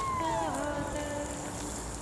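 A woman's voice singing an unaccompanied Estonian runic folk song (regilaul), holding long notes, with one note sliding down in pitch about half a second in.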